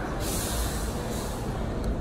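Street traffic rumbling, with a burst of hiss lasting about a second near the start.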